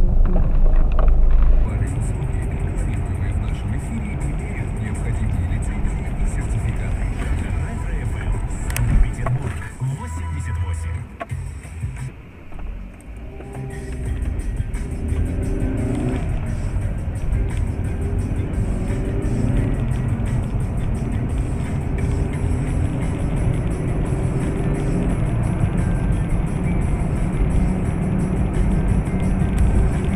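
Car road noise picked up by a dashcam microphone inside a moving car, a steady low rumble. After a break in the sound about twelve seconds in, music plays over the road noise.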